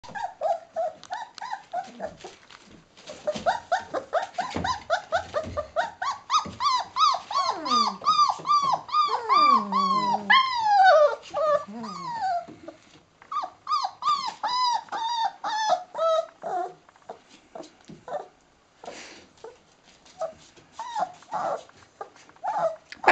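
Young puppies whining and squealing: a long run of short, high cries, each rising and falling, coming fast and loudest through the middle, then thinning out into scattered cries with pauses near the end.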